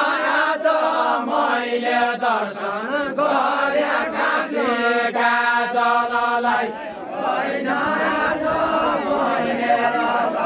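A group of men singing a folk song together in chorus, their voices overlapping on long drawn-out notes. One note is held for about two seconds around the middle, followed by a brief dip before the singing picks up again.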